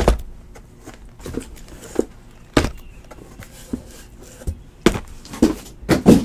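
Irregular knocks and thuds, about ten over six seconds with the loudest at the start, about two and a half seconds in and near five seconds, as boxes of trading cards are picked up and set down.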